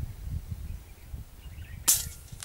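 A single sharp gunshot crack near the end, the loudest sound here, with a brief echo after it. Under it is a low rumble of wind and handling on the microphone.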